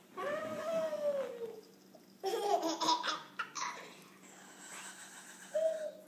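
Laughter: a long high squeal that falls away at its end, then a louder burst of laughing about two seconds in, and a short squeal near the end.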